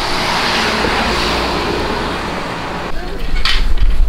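A Volkswagen van driving past on a paved street: a steady hiss of tyres and engine that slowly fades. About three seconds in it gives way to wind buffeting the microphone.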